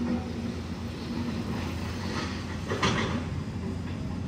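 Street traffic: a steady low engine hum from motorcycle tricycles and other vehicles, with a brief louder sound a little before three seconds in.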